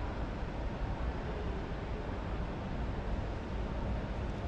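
Steady background noise of a large, busy exhibition hall: an even low rumble and hiss with no distinct events standing out.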